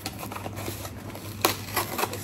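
A cardboard box being handled: a sharp tap about halfway through, followed by two lighter taps and faint rustling.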